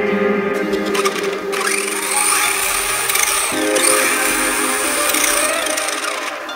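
GoolRC 3900 KV 4-pole brushless motor running the buggy's drivetrain in reverse with the wheels off the ground, spinning up a couple of times with a rising whine, over background music.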